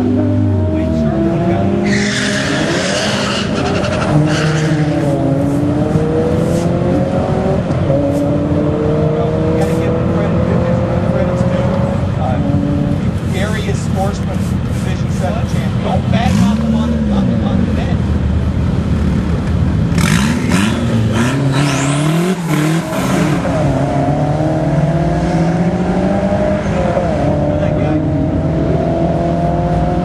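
Drag-racing cars revving and accelerating hard, engine pitch climbing and falling over and over as different cars run. There are noisier stretches about two seconds in and again about twenty seconds in.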